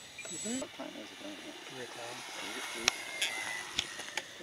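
Indistinct voices talking over the faint, steady whine of a model biplane's motor and propeller as it takes off, with a couple of sharp clicks near the end.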